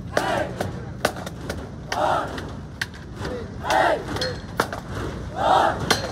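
Marching band members shouting a chant in unison, one loud call about every two seconds, with sharp clicks in between.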